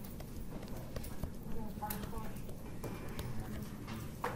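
Stylus tapping and drawing on a tablet screen, a scatter of irregular sharp clicks over low steady room noise.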